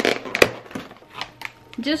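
Takeout food containers being handled: one sharp click about half a second in, then a few faint taps.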